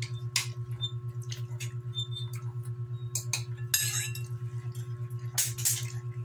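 Spoons and utensils clinking against dishes and a bowl: a handful of sharp, scattered clinks over a steady low hum.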